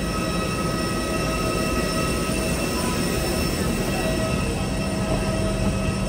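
Steady mechanical whine over a constant rush of air from a parked Airbus airliner's running systems, heard at the open cabin door. Several high tones hold steady throughout, and a lower hum joins about halfway through.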